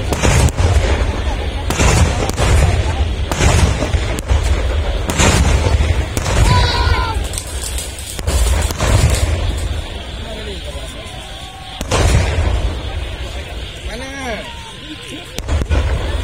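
Traditional Malay cannons (meriam) being fired across the water, deep booms with a rolling low rumble, roughly one a second for the first ten seconds, then fewer, with a strong one about twelve seconds in and another at the very end.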